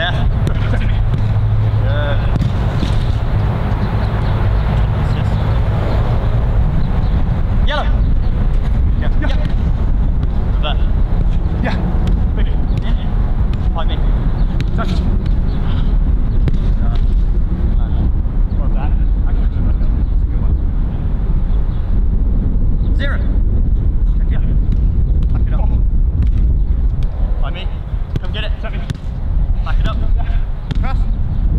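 A soccer ball being kicked and passed, sharp thuds every few seconds, over a steady low rumble and indistinct voices.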